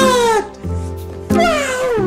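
Cat meowing twice, each meow a drawn-out falling call, over background music.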